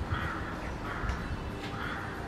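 A bird calling outdoors: three short harsh calls about 0.8 s apart, over a low rumble.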